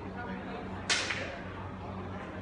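A single sharp crack about a second in, with a brief ringing tail and a smaller click just after, over a steady low hum.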